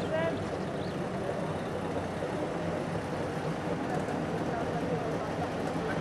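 A queue of Trabants' small two-cylinder two-stroke engines idling together in a steady low mixed running sound.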